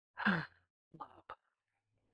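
A woman's short sigh, falling in pitch, followed about a second later by two brief soft sounds, the second a sharp click.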